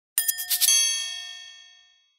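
Chime sound effect: a quick flurry of bright metallic strikes, then a ringing tone that fades away over about a second and a half.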